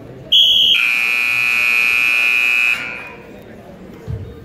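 Wrestling scoreboard buzzer sounding to end the period as the clock runs out. It is a loud electronic tone that begins with a brief higher note, drops to a steady lower one for about two seconds, then cuts off.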